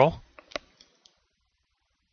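The end of a man's spoken word, then three or four faint, short clicks.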